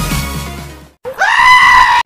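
Electronic intro music fades out over the first second. After a brief gap comes a loud, high-pitched scream that rises at its start, is held, and is cut off abruptly.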